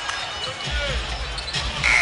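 Basketball arena sound during live play: steady crowd noise over a low hum, with a short high squeak near the end.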